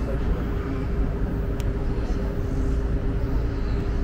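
Outdoor city ambience at night: a steady low rumble with a faint steady hum throughout.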